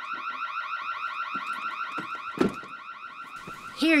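Electronic alarm warbling: a fast run of rising chirps, about eight a second. It fades about two and a half seconds in, as a single sharp knock sounds.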